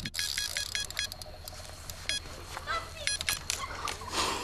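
Electronic bite alarm on a carp rod beeping in quick runs of short, high beeps, the sign of a fish taking line.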